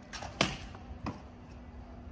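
Trainers striking concrete as a man runs and jumps: two sharp thuds about two-thirds of a second apart, the first the louder, over a faint steady hum.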